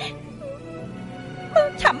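A woman's singing voice in a sad song, with a wavering, vibrato-laden line over a soft, steady musical accompaniment; the voice pauses and comes back in with a sharp upward glide about one and a half seconds in.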